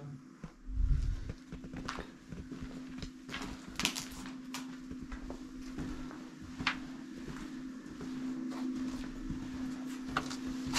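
Footsteps and scuffs on a debris-strewn floor as people walk through an empty building: irregular short knocks and crunches over a steady low hum, with a low thump about a second in.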